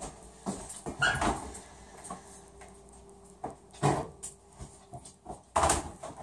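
A pet dog making a few short vocal sounds, with some light knocks in between.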